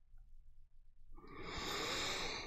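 Near silence, then a rising rush of noise, like a whoosh, swells up about a second in and holds to the end.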